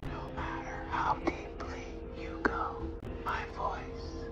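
Whispered voices over a low, sustained droning music score from the show's soundtrack, with two sharp ticks partway through.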